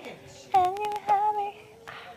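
A woman singing a short high-pitched phrase of two notes, starting about half a second in, with a faint held note trailing off near the end.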